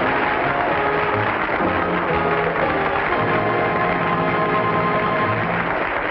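Opening theme music, held chords over low sustained notes.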